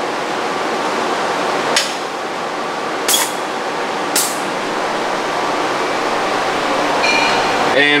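Three short, sharp hisses of air about a second apart, over a steady hiss: pneumatic air cylinders and valves actuating a CNC lathe's collet foot pedal, pressing and releasing it so the collet opens.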